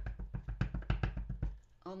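Clear acrylic block with a photopolymer stamp tapped rapidly and repeatedly onto a felt StazOn ink pad, about six or seven soft knocks a second, patting the pad so the ink rises and coats the stamp well. The tapping stops shortly before the end.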